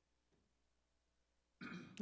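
Near silence: room tone through the meeting microphones, until a person's voice comes in near the end.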